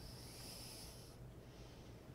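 A faint, soft breath exhaled close to the microphone, a hiss lasting about a second.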